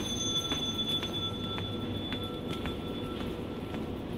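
Footsteps on a tiled floor, about two a second, over a steady low hum of building air handling. A thin high steady whine sounds along with them and stops about three seconds in.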